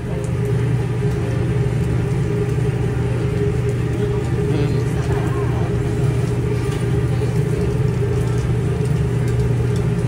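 A steady, loud low machine hum with a few fixed tones, under faint voices.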